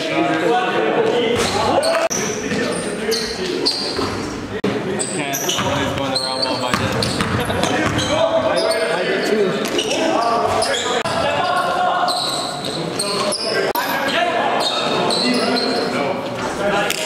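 Live sound of an indoor basketball game: a basketball bouncing on the gym floor, short high squeaks and players' voices, all echoing in the hall.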